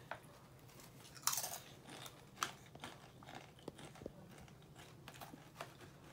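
A Doritos tortilla chip bitten with a crunch about a second in, then chewed with a series of softer, irregular crunches.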